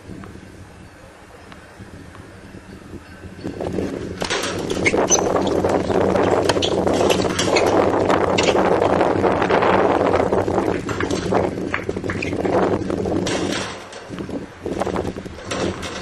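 Tennis rally: racket strikes on the ball as sharp knocks, over a loud rushing noise that sets in about four seconds in and falls away a couple of seconds before the end.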